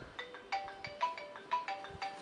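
Mobile phone ringtone: a quick melody of short, bright pitched notes, several a second.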